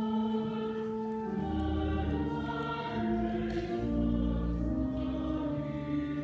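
Church music: a choir singing sustained chords, with a low bass line coming in about a second and a half in.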